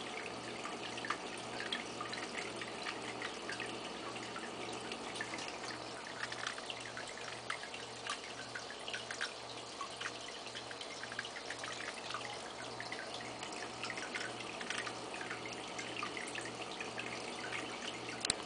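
Aquarium water trickling and dripping steadily, with many small irregular splashes, over a faint low hum that pulses evenly.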